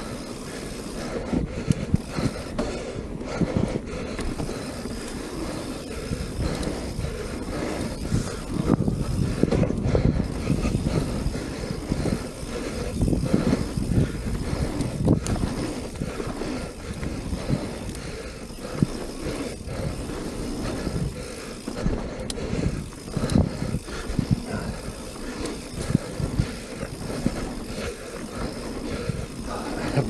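Mountain bike rolling down a dirt singletrack: steady tyre noise on packed dirt, with irregular rattles and knocks from the bike over bumps.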